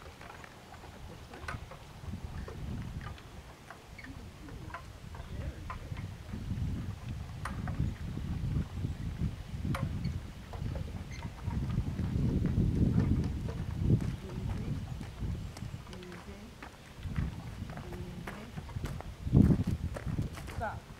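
Uneven low rumble of wind on the microphone, with faint scattered ticks of paws and cart wheels on gravel and a single thump near the end.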